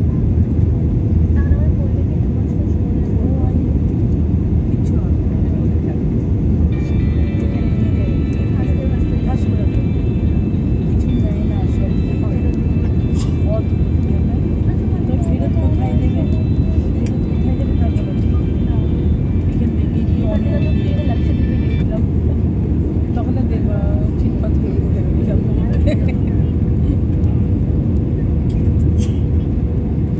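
Steady cabin roar of a jet airliner on its descent, engine and airflow noise heard from a window seat over the wing. A high, steady whine joins from about seven seconds in and stops about fifteen seconds later.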